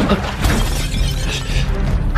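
Fight-scene sound effects in an animated action film: a crash of breaking material at the start, followed by a few sharp hits, over a background music score.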